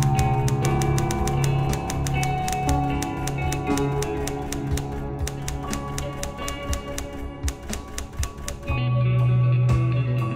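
Typewriter key clicks, about four or five a second, over background music; the clicking stops near the end as the music carries on.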